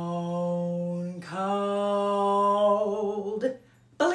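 A woman singing the "stone cold" vocal exercise low in her chest voice, with a dropped jaw and the vowels held: a long "stone", then a long, slightly higher "cold" that cuts off about three and a half seconds in. It is a drill for reaching and digging out low notes.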